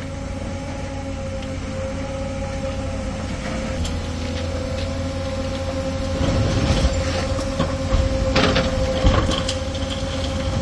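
Diesel engines of JCB backhoe loaders running under load with a steady whine, while a derailed coal wagon is lifted and shifted. Scattered metal knocks and scraping grow louder from about six seconds in.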